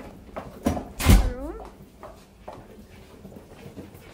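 A hotel room door closes with a knock and then a heavy thud about a second in. A short rising, voice-like sound follows, then quiet room tone.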